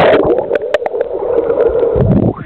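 Muffled underwater rushing and bubbling as a jumper plunges into a swimming pool, heard through a submerged camera microphone.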